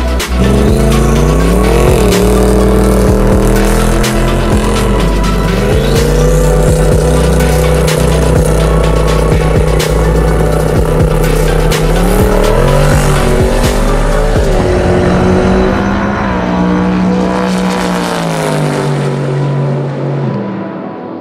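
Music mixed with a race car's engine, its pitch climbing and holding in several steps, over a deep bass that fades out near the end.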